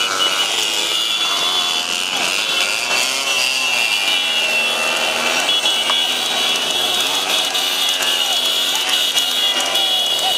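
Motorcycle engines running close by at speed, with men's voices shouting over them.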